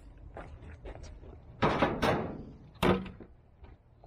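Two loud, sudden thumps about a second apart, the first with a short ringing tail, after a few light footsteps or ticks.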